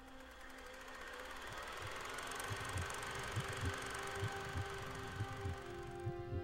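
Logo-intro sound design: a swelling wash of noise with held tones and repeated low thumps, building slowly in loudness toward the opening music.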